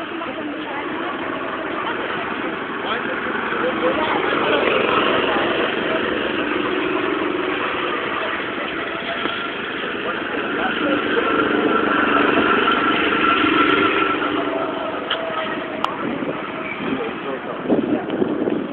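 Go-kart engines running, swelling louder twice as karts come close and draw away again.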